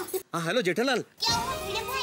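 A short spoken phrase in a high voice, then, just over a second in, a change to background music under a mix of voices.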